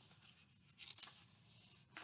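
Faint rustle of old paper as a folded booklet page in a scrapbook is handled and opened, briefly, about a second in.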